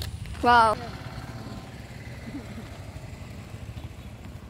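A short spoken phrase in the first second, then a steady low rumble of outdoor background noise.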